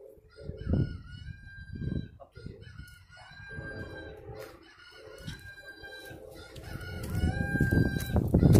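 A rooster crowing several times in long, held calls. Low thumps hit the microphone about one and two seconds in, and a louder low rumble builds near the end.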